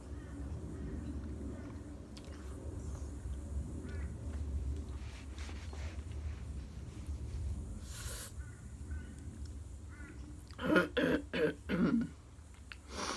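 A woman coughs and clears her throat in four quick, loud bursts near the end, after a quiet stretch of low room hum.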